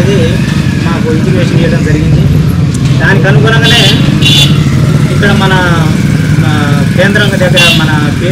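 A man speaking loudly to a gathered crowd, over a constant low rumble.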